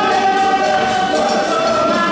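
Male chorus singing a traditional Beninese song, sustained voices together, over light percussion striking about four times a second.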